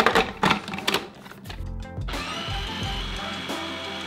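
Plastic clicks and knocks as a food processor's bowl and lid are worked into place, then about two seconds in its motor starts and runs steadily with a high whine, whipping fresh ricotta.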